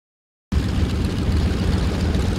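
Several Yakovlev Yak-52s' nine-cylinder radial engines running at low power on the ground, a steady, deep sound. It cuts in sharply about half a second in, after silence.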